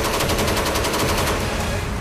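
Machine gun firing a sustained automatic burst, about ten shots a second, the shots fading near the end.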